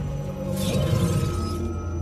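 Low, sustained film-trailer music, with a glassy, shattering shimmer of a sound effect about half a second in that lasts roughly a second, as the glowing Tesseract appears in an open hand.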